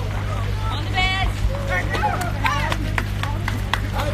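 Crowd hubbub: many voices calling out and cheering over a steady low hum, with a few short sharp clicks in the second half.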